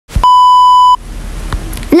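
A steady, loud high-pitched test-tone beep lasting under a second, the tone that goes with TV colour bars, cutting off abruptly into a quieter hiss of static with a faint click.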